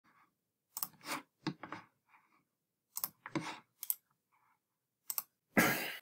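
Computer mouse clicks while a file is opened on a desktop: several sharp clicks spread over a few seconds, some in quick pairs like double-clicks, with quiet between them. Near the end comes a brief loud rush of noise.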